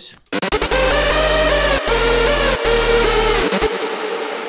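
Electronic synth lead played back through long reverb and a Replika XT ping-pong delay, with low bass underneath, the lead sounding a little muddy from the delay. It starts about half a second in, the bass breaks off briefly twice, and the bass stops shortly before the end while the reverb and delay tail rings on.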